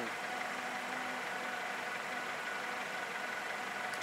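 A car engine idling steadily: an even, unchanging hum.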